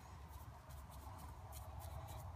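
Faint, light scratchy strokes of a wet bristle chip brush dabbed over soft epoxy sculpting putty, knocking down and softening its texture.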